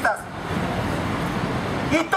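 Steady noise of passing road traffic, heard between bursts of a man's amplified speech through a megaphone.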